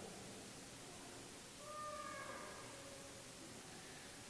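Quiet, reverberant room tone of a large church during a pause in a sermon, with the echo of the last spoken words dying away at the start. About one and a half seconds in comes a faint, short, high-pitched sound that falls slightly in pitch.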